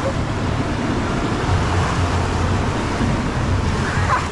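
Turbulent water rushing and churning around an inflatable tube in a water coaster's channel, a steady rush of noise with a strong low rumble.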